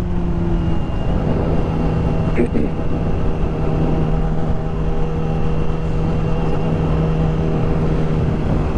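2017 Yamaha R6's inline-four engine running at a steady cruise with an even, unchanging pitch, under loud wind rushing over the helmet microphone.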